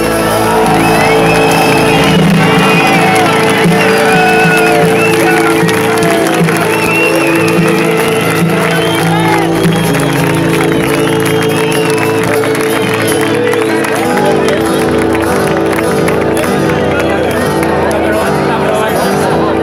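Live rock band with acoustic and electric guitars holding sustained chords while the audience cheers and shouts; the held chords change about fourteen seconds in.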